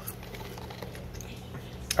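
A man chewing a mouthful of fries, with faint small mouth clicks over a steady low hum.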